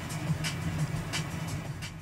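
Steady low road and engine rumble heard from inside a moving car's cabin, with faint clicks about every two-thirds of a second. The sound fades out right at the end.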